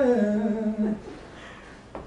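An a cappella vocal group singing, stepping down to a lower held note that stops about a second in, leaving a short pause.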